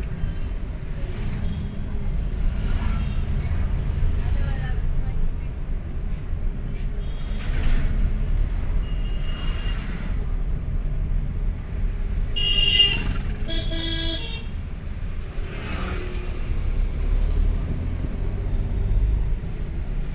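Steady low engine and road rumble heard from inside a car in slow, dense city traffic, with vehicle horns honking around it. The loudest are two horn blasts in quick succession a little past the middle, with fainter honks at other moments.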